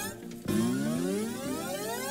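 Electronic sound of an online video slot game as its reels spin: after a brief dip, a synthesized tone rises steadily in pitch.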